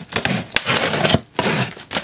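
Cardboard shipping box being opened: packing tape cut and torn and the cardboard flaps pulled up, a run of scraping, crackling noise with a sharp click a little way in.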